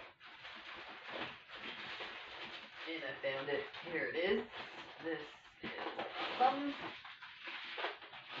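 A woman's voice talking quietly and indistinctly, with the words unclear, over a continuous rustling noise.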